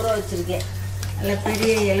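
Food sizzling in a pan on a gas stove, with a steady low hum underneath. A woman's voice speaks at the very start and again from a little past the middle.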